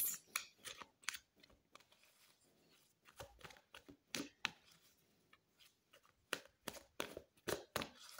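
A deck of tarot cards being shuffled by hand: quiet, irregular flicks and taps of card against card, with a short lull about two seconds in and a busier run near the end.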